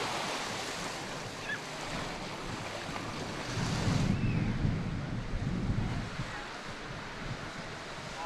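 Sea surf washing on a sandy beach, with wind buffeting the microphone in a low rumble, strongest from about three and a half to six seconds in.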